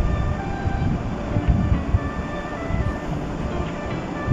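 Low, uneven rumble of road traffic passing outside, with soft music playing over it.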